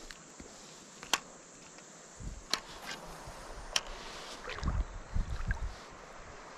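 Quiet handling noise from an angler wading with a spinning rod: three sharp clicks about a second apart over a steady hiss, then a cluster of low thumps near the end.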